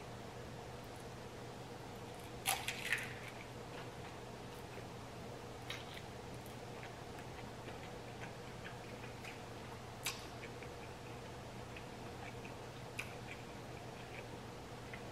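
Close, quiet mouth sounds of someone chewing a taco: scattered soft clicks and smacks, the strongest a short cluster about two and a half seconds in, over a steady low hum.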